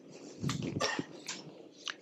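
Soft rustling handling noise at a lectern, with a few short clicks as the slide is advanced.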